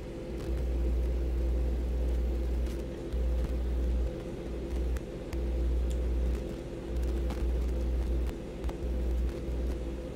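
Deep, low rumble from a music video's cinematic sound design, swelling and dropping away every second or two over a faint steady hum.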